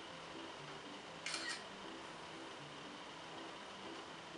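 A short double-click camera shutter sound about a second in: an iPod's camera taking a photo. Faint background piano music plays throughout.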